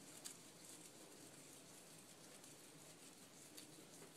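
Near silence: faint rustling of hair being twisted by hand, with a soft tick about a quarter-second in and another near the end.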